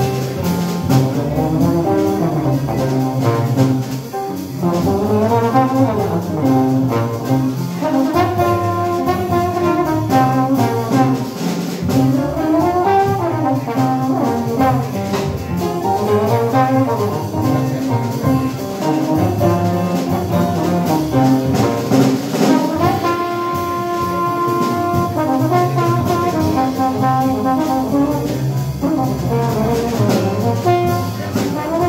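Live jazz quintet playing a minor blues, a trombone out front playing lines that rise and fall over piano, guitar, double bass and drums.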